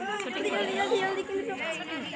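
Several women's voices talking over one another.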